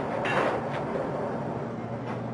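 Hand pepper mill being twisted, grinding pepper into a saucepan, over a steady low background hum.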